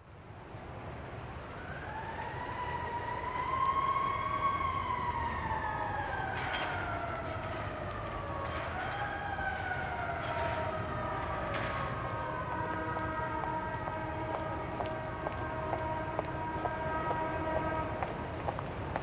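Sound-effect opening of a track, fading in from silence: a siren-like wail whose pitch rises and falls twice, then settles into a steady chord of several held tones, with a few sharp clicks.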